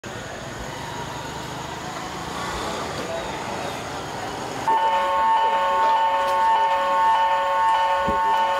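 Background noise, then just past halfway a loud, steady chord of several held tones starts abruptly and keeps sounding, like a multi-tone horn.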